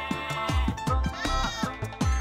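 Upbeat background music with a steady bass-drum beat, and a goat bleat sound effect over it partway through.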